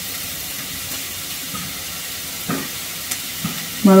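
Food frying in an iron kadai on a gas stove: a steady sizzle, with a few faint clicks in the second half.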